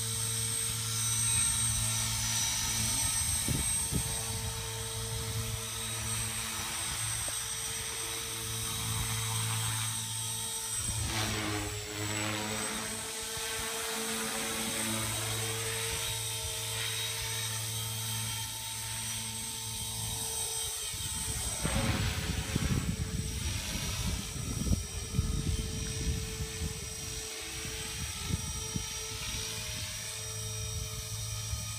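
Small electric 450 Pro RC helicopter flying: a steady motor and rotor whine that swoops up and down in pitch a couple of times as it manoeuvres, turning choppier and louder a little past two-thirds of the way through.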